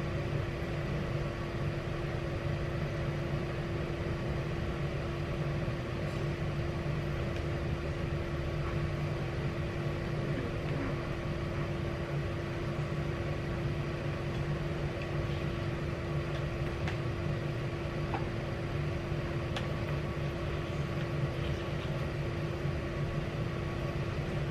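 A steady machine hum with a constant low tone, unchanging throughout, with a few faint light clicks over it.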